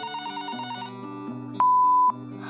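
Telephone ringing with a fast electronic trill that stops just under a second in, followed by a single loud, steady beep of about half a second, over background music.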